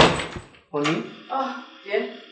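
A single sharp bang from a wooden door at the very start, dying away within about half a second, followed by a woman calling out.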